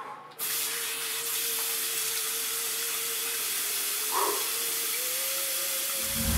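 Water running steadily in a bathroom, a hiss that starts just under half a second in and holds evenly, with a faint steady tone underneath that shifts up slightly near the end.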